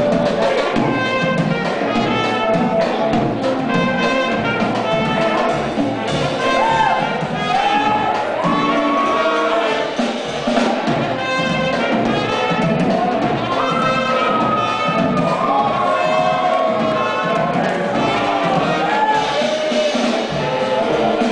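Small live band of saxophones, trumpet and drum kit playing a tune: held and sliding horn lines over a steady drum beat.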